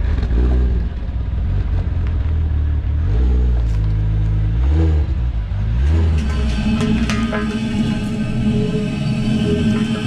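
Toyota Supra MkIV's 2JZ-GTE inline-six running with a deep, low rumble as the car pulls out, its pitch rising and falling a few times. About six seconds in, steady background music with sustained tones takes over.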